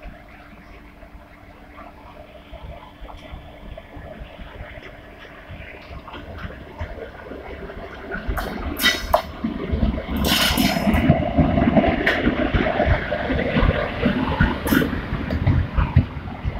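Indian Railways electric locomotive and its passenger coaches approaching on the adjacent track. The sound grows louder until the locomotive draws level about ten seconds in, then the coaches roll past close by with a steady rumble and sharp clacks of wheels over the rails.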